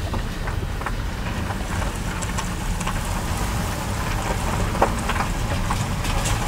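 Car driving slowly over a slushy, snow-covered lane, heard from inside the cabin: a steady low rumble of engine and road, with scattered crackles and ticks of the tyres through wet snow and ice and one sharper knock about five seconds in.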